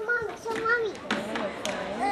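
A young child's high-pitched voice vocalizing for about a second, then a noisier background with a few sharp knocks.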